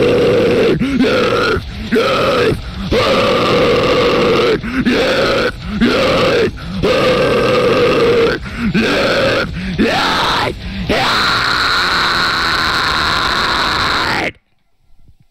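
The closing bars of a heavy metal cover recording: a dense, distorted, growling sound in stop-start chugs, three about a second apart and then a short break, repeated. It ends in one long held chord that cuts off abruptly.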